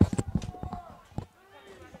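A quick run of sharp clicks and knocks that thins out and stops after about a second, with faint voices behind.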